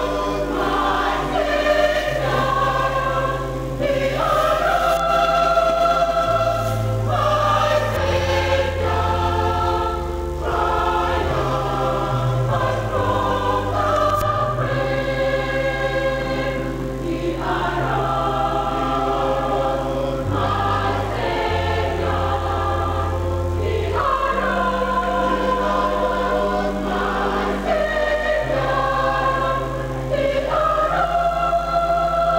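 Mixed church choir singing an Easter carol in several parts, in long held chords that change every second or two over a steady low bass line.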